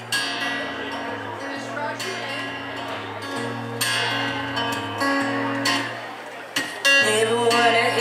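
Acoustic guitar strumming the song's intro chords, a chord struck about every two seconds over held low notes, getting louder near the end.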